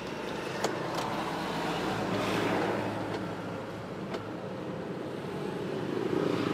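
Steady road-traffic and vehicle noise that swells briefly about two seconds in, like a vehicle going by, with a few faint clicks.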